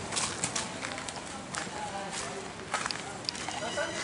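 Horses walking on a dirt trail, their hooves giving irregular short knocks, with faint voices in the background.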